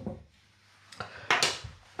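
A few light knocks and clinks of kitchen utensils or a bowl being handled on the worktop, starting about a second in.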